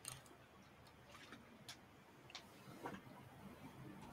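Near silence, broken by a few faint, irregularly spaced clicks.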